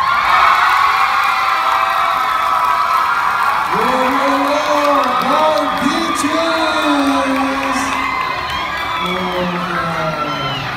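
An audience cheering and whooping after a dance performance. Voices close by shout over the cheering from about four seconds in.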